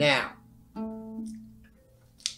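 A lever harp string plucked about three-quarters of a second in, its note ringing and slowly fading.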